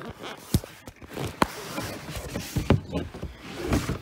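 Handling noise from a phone being shifted in the hand while a very large hardcover book is taken hold of: rubbing and rustling with a few sharp knocks, about half a second, a second and a half and nearly three seconds in.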